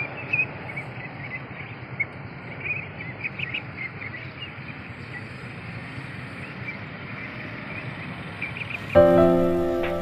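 Scattered short, high peeps of Pekin ducklings over a steady outdoor background noise. About nine seconds in, soft piano music starts abruptly and is the loudest sound.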